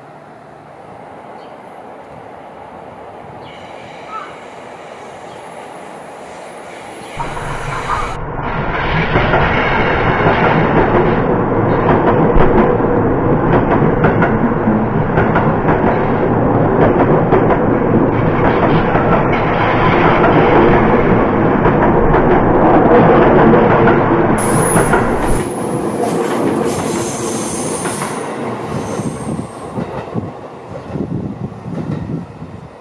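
Yellow Seibu electric commuter train passing close by, its wheels running loudly on the rails. The sound starts abruptly about seven seconds in and drops away about twenty-five seconds in.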